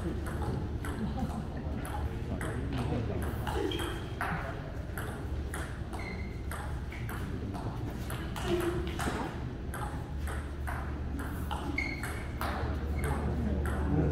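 Table tennis rallies: the ball clicking off the paddles and the table in quick repeated strikes.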